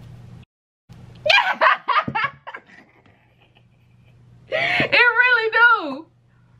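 A woman laughing in a quick run of short bursts, then a long drawn-out vocal sound that falls in pitch near the end.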